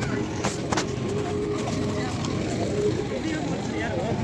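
Busy street ambience: indistinct voices of passers-by over a steady rumble of traffic, with two sharp clicks about half a second in.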